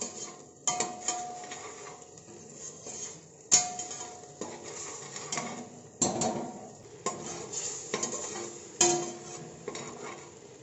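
Metal slotted spoon stirring thick boiling masala in a stainless steel pressure cooker, scraping round the pot and striking its side with several sharp ringing clinks every second or two.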